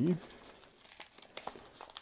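A sealed paper envelope's glued flap being peeled and pried open by hand, with faint crinkling and small tearing crackles as the extra-sticky seal gives way.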